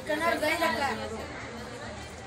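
Chatter of a crowd of people talking at once, with one voice standing out clearly in the first second.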